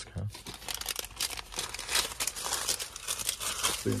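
A paper fuel receipt being crumpled in the hand: a dense, irregular crackling of paper.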